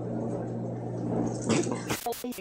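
A person taking a bite of food and chewing, with a brief muffled vocal sound about a second and a half in, over a steady low hum.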